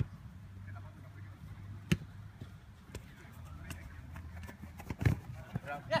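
A futsal ball being kicked on artificial turf: a sharp kick about two seconds in and a heavier thud about five seconds in, with lighter touches between. A steady low hum runs underneath.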